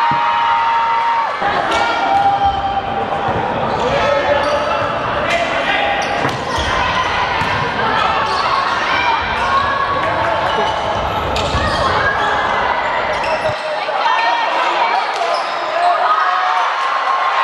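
Referee's whistle blown once for about a second at the start, then a volleyball rally in a sports hall: repeated sharp ball strikes mixed with players' and spectators' voices calling out, echoing in the large hall.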